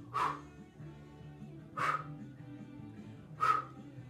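Background music, with three short, sharp exhaled breaths about a second and a half apart, forced out in time with cross-body punches.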